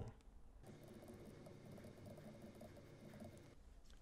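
Near silence with a faint, fast run of small clicks: graphing-calculator key presses in sped-up footage.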